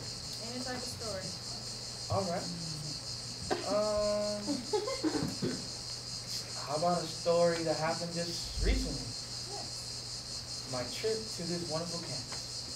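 Crickets chirping, a steady high trill, under soft murmured voices and one drawn-out hum; a single low thump near the end.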